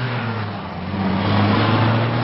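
Toyota pickup truck driving, its engine running with a steady low drone over road and wind noise, growing a little louder about halfway through.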